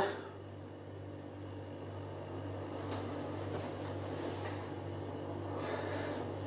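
Low steady hum of room tone, with a faint, long sniff from about three seconds in as a person noses a glass of beer.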